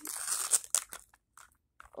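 Plastic wrapping crinkling and tearing as a Mini Brands capsule is opened by hand: a dense crinkle in the first half-second, a few sharp crackles, then little until the end.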